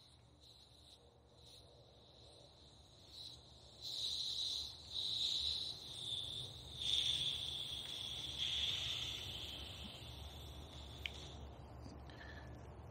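Air hissing out of a bicycle tyre through its valve as the valve core is unscrewed. The thin, high hiss swells about four seconds in, wavers, and slowly fades as the pressure drops. A small click comes near the end.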